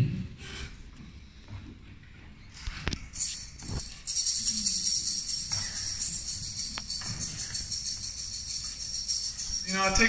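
Handheld rattle shaken steadily, a continuous high-pitched rattle starting about four seconds in, after a couple of light knocks.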